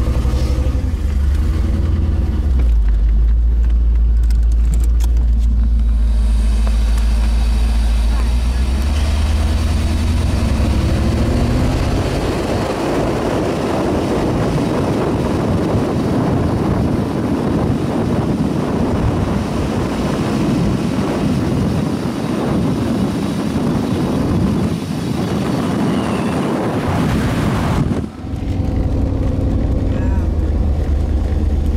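1990 Corvette's V8 heard from inside the cabin, running low and deep at first and rising in pitch as the car picks up speed, then steady road and wind noise over the engine as it drives on. The deep engine sound comes back near the end after a brief drop.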